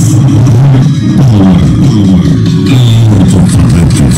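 Music with a heavy bass line played at high volume through a car-audio speaker wall of Hard Power HP 3650 woofers and horn tweeters, driven by a Soundigital SD 8000 amplifier.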